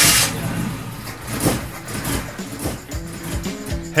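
An old vehicle engine starting up and running, with music playing under it. It is meant to sound worn out: an engine due to be swapped for a better one.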